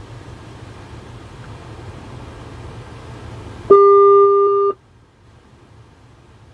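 Low car-cabin road rumble, then about three and a half seconds in a loud electronic telephone-style beep, one steady tone held for about a second, which cuts off abruptly; after it the sound drops to a faint, thin hiss like a phone line.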